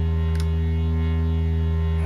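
Barton Musical Circuits BMC053 four-quadrant multiplier, a ring-modulating Eurorack synthesizer module, putting out a steady drone. It is a low, hum-like tone with many fixed overtones above it, unchanging throughout.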